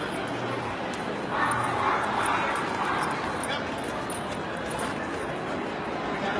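A dog barking over the steady hubbub of a crowded hall, loudest between about one and a half and three seconds in.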